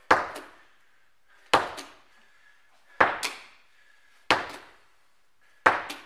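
Rubber medicine ball thrown repeatedly against a wall: five sharp thuds at an even pace, about one every second and a half, each followed closely by a softer knock.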